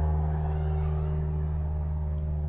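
A steady low hum made of several held tones, unchanging throughout.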